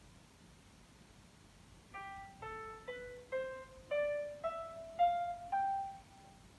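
Notation software's piano sound playing back each note as it is entered: a rising G-sharp harmonic minor scale, eight short notes stepping up about every half second, starting about two seconds in.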